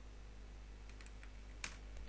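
Computer keyboard keystrokes as a search term is typed: a few faint taps and one sharper key press about a second and a half in, over a low steady hum.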